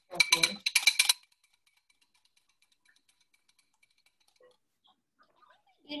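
Wire whisk beating egg in a bowl: a fast run of metallic clinks that stops about a second in. Faint scattered ticks follow, then near silence.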